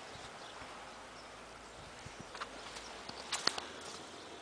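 Faint footsteps on wet grass and mud, with a few sharp clicks, the loudest cluster coming near the end.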